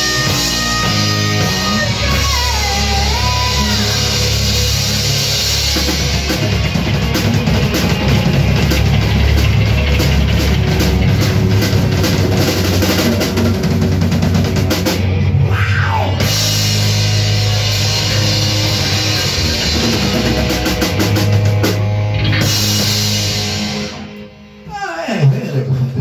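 A live rock band playing in a small rehearsal room: drum kit, electric guitars and bass, with a bending guitar line early on. Near the end the playing drops away, then comes back for a few loud final hits.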